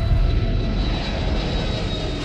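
Jet airliner rumble: a steady low roar with a faint high whine, starting on a deep low boom.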